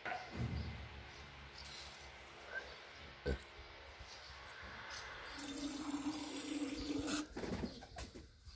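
Pigeons cooing faintly, with one longer, steady coo in the second half.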